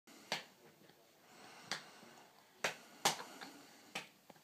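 A six-month-old baby making short, sharp mouth and breath sounds, four in all, while his hands are at his mouth.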